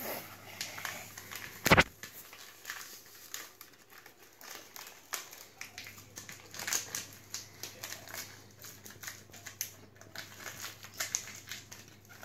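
Paper dessert-mix sachet crinkling as it is squeezed and shaken to empty the last powder into a plastic mixing bowl, in many small irregular crackles. There is one sharper knock a little under two seconds in.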